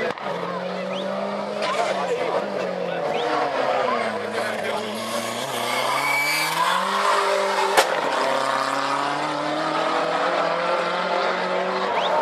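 Fiat Uno Turbo's engine under hard acceleration on a slalom run: the pitch drops about four seconds in as it lifts off, then climbs again as it revs up. A brief high tyre squeal comes about six seconds in, and a sharp click follows near eight seconds.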